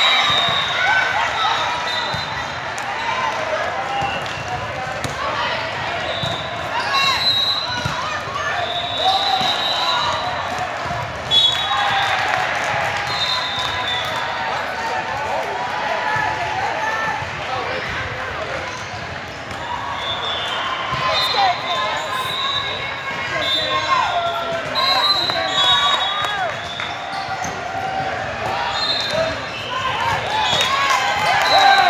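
Indoor volleyball match in a large echoing sports hall: many overlapping voices of players and spectators, with the thuds of the volleyball being hit and bouncing on the court. There is a sharp loud thud about eleven seconds in.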